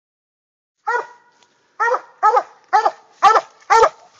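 Coon dog tree-barking: one bark, a pause, then five barks about two a second. This is the dog's bark at a tree where it has treed a raccoon.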